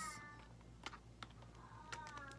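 Sugar glider giving a faint, short pitched call that slides slightly downward near the end, with a few light clicks from gloved hands on a plastic carrier.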